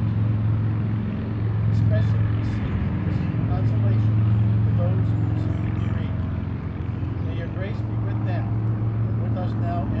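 A steady low mechanical hum of a running machine, the loudest thing throughout, with a voice speaking faintly over it.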